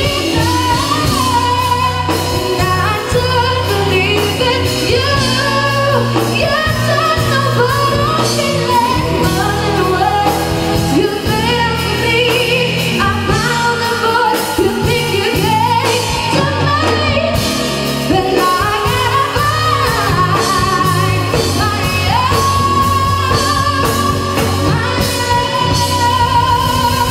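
A woman singing a pop song live into a microphone, with keyboard accompaniment, echoing in a hall.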